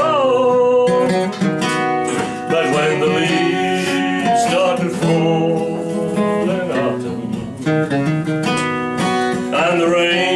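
Acoustic guitar strummed and picked, with a man singing a slow country ballad over it in places.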